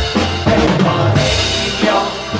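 Loud band music with a drum beat and heavy bass, played through the stage sound system.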